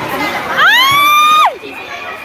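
A woman's high-pitched shriek that rises in pitch, holds for about a second and then drops off sharply. It is heard over the murmur of voices in a large hall.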